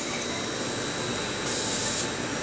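CSR electric multiple unit train moving along the platform: steady running noise with a thin, steady high whine. About one and a half seconds in, a high hiss joins it.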